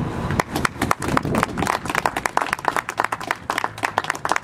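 A small group of people applauding by hand, irregular claps that start a moment in.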